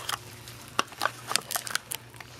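Small handling noises: a scatter of sharp clicks and crackles as a plastic tub of cocoa butter is handled and its lid opened.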